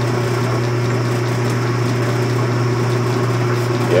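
Early-1950s Logan 10x24 metal lathe running steadily under its electric motor with the automatic carriage feed engaged: an even hum, with the gears nice and quiet.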